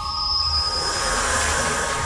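Title-animation sound effect: a swelling metallic whoosh with a high thin whine in its first second, over a low rumbling drone and held electronic tones.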